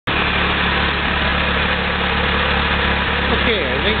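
Farmall H tractor's four-cylinder engine running steadily on wood gas (producer gas from an onboard gasifier).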